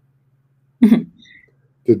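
A person clearing their throat once: a single short, loud burst about a second in.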